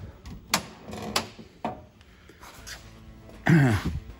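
Three sharp metal clicks about half a second apart as steel strips and locking pliers are handled against the car body, then a man clearing his throat near the end.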